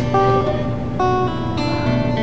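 Background music: a guitar plucking a slow line of single sustained notes.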